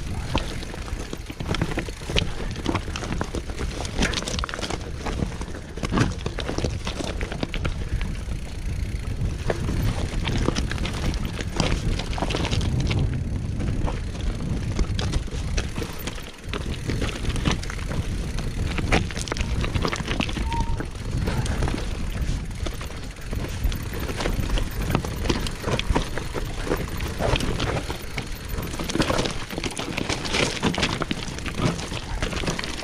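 Mountain bike descending a rocky singletrack: tyres rolling and crunching over stones, with a constant clatter of short rattles and knocks from the bike over a low rumble.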